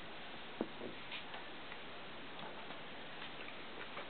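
Cavalier King Charles Spaniel puppies playing with plush toys: faint, irregular small clicks and ticks, the sharpest about half a second in, over a steady background hiss.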